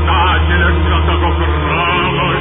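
Recorded sacred chant: a voice singing a wavering, melismatic line over a low, steadily held drone.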